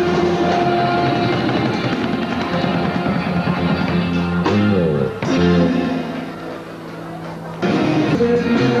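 A band playing dance music, with electric guitar and drum kit. The music dips in level for the last two seconds or so, then comes back abruptly.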